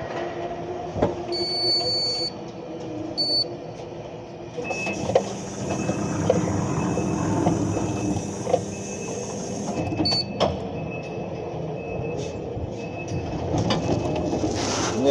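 Warehouse lift truck running as the operator drives it: a steady machine hum with scattered clicks and knocks, and a faint high beep that sounds on and off through the second half.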